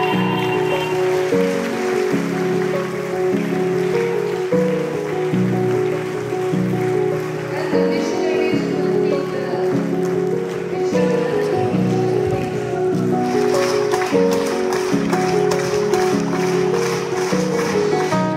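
Background music of sustained chords that change every second or so, with a brighter, hissier layer joining about two-thirds of the way in.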